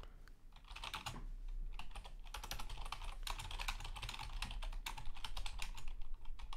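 Typing on a computer keyboard: quick runs of key clicks, sparse at first and then dense from about a second in, as a search phrase is entered.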